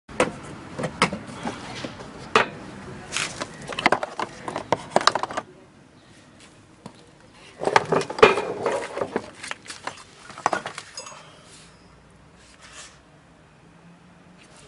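Hard plastic tool case being unlatched and opened, a run of sharp plastic clicks and knocks for the first few seconds. After a short lull, a second burst of knocks and rattles as the rotary hammer is handled and lifted out of its moulded case, then only light handling.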